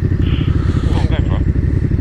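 Motorcycle engine idling at a standstill, a steady low even pulse.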